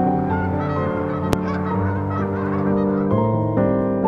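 Canada geese honking, heard over background music with sustained chords.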